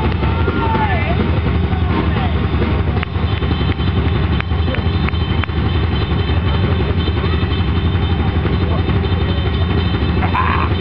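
A live drum kit played hard and without a break, heard as a loud, continuous low rumble with no clear beat, with a few shouting voices over it near the start.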